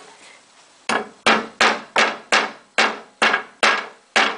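Claw hammer striking wooden bed slats during assembly of a bed frame: after about a second of quiet, eight sharp, evenly paced blows, about three a second.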